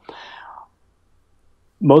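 A man's audible breath between words, a short airy hiss of about half a second, followed by a pause. His speech resumes near the end.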